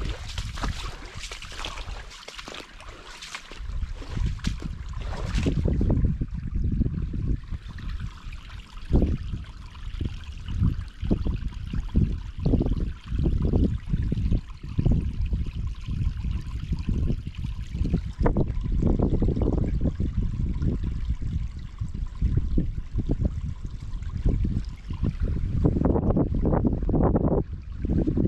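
Shallow water trickling in a ditch and out of a small drainage pipe. Wind rumbles on the microphone in gusts from about six seconds in, and footsteps crunch through dry grass and twigs in the first few seconds.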